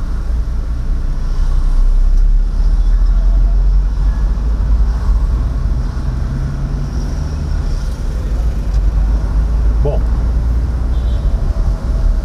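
Car cabin noise while driving slowly in town traffic: a steady low rumble of engine and tyres, with the driver's window open to the street.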